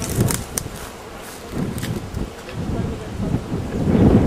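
Wind buffeting the camcorder microphone: an uneven low rumble with a few faint clicks, louder near the end.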